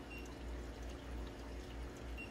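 Faint water trickling and dripping in a hydroponic tank over a low steady hum.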